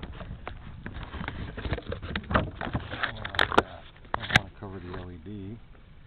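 Handling noise close to a small camera's built-in microphone: fingers rubbing and tapping on the camera as it is strapped in place, giving a run of clicks and knocks with a few sharp clicks a little past the middle. A short low hum of a man's voice follows near the end.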